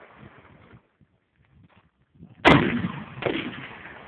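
A single shot from an M44 Mosin-Nagant carbine in 7.62×54R, about two and a half seconds in, loud and sudden, followed by a rolling echo that dies away over about a second.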